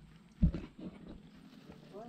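A single sharp thump about half a second in, with faint voices around it.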